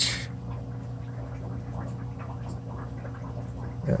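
Aquarium filter equipment running: a steady low hum with faint bubbling water.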